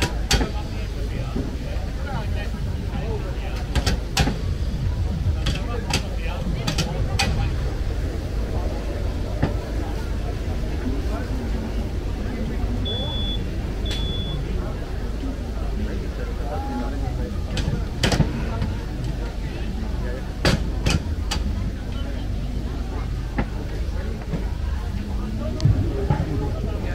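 Sharp metallic clunks now and then from a lever-operated potato fry cutter as potatoes are pressed through its blade grid. Under them run steady background chatter and a low outdoor rumble.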